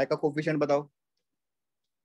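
A man's voice speaking a short phrase for about the first second, then silence.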